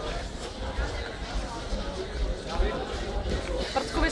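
Indistinct voices and chatter from people in a sports hall, over a steady low rumble.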